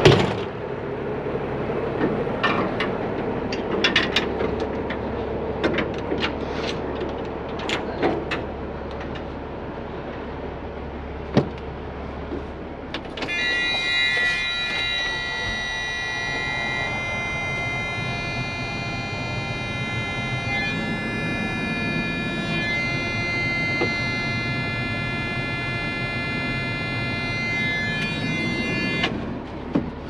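A truck's low engine hum with scattered metal clanks and knocks for about the first thirteen seconds. Then the hum stops and a steady high electronic warning tone sounds for about sixteen seconds before cutting off.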